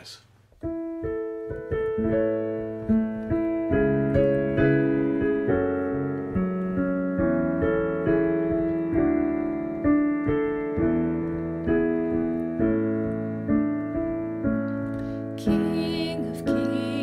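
Piano introduction to a worship song: slow, steady chords struck at an even pace. A singing voice comes in near the end.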